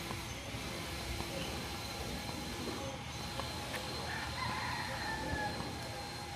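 Rooster crowing once, a single drawn-out call a little over a second long that falls slightly at the end, about four seconds in, over a low steady street hum.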